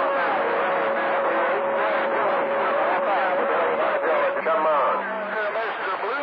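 CB radio receiving skip on channel 28: garbled, overlapping voices of distant stations, with a steady tone running under them until about four seconds in.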